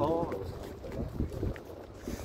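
Wind rumbling on a phone's microphone while walking outdoors, with the tail of a man's voice at the very start.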